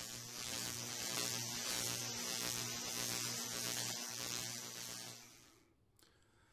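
A steady hiss with a low electrical hum underneath. It swells in at the start and fades out shortly before the end.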